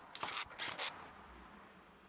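A few short scrapes and knocks in the first second, from a cordless drill-driver being handled against a wooden batten on the wall, then only faint hiss.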